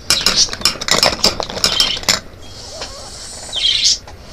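Plastic makeup cases and compacts clicking and clinking as they are handled, a quick run of sharp clicks for about two seconds. Then a softer hiss, and a brief high-pitched sound just before the end.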